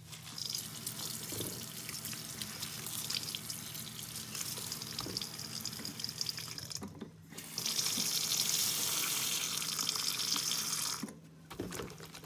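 Tap water running into a glass bowl of soapy sponges in a sink, with wet sponges squelching as they are squeezed. The flow is loudest and steadiest for about three seconds in the second half, then cuts off about a second before the end.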